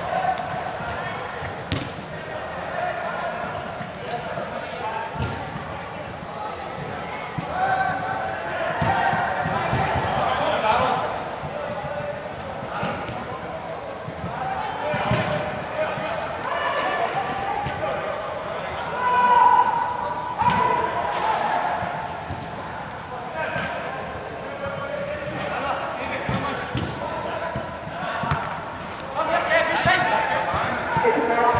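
Players' shouts and calls during a small-sided football match in a large indoor sports hall, with scattered thuds of the ball being kicked and bouncing on artificial turf.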